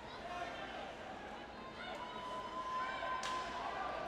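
Ice hockey rink sound: crowd chatter with a few sharp knocks of sticks and puck on the ice, two of them about two seconds in and a second later, and a long held call rising over the crowd near the middle.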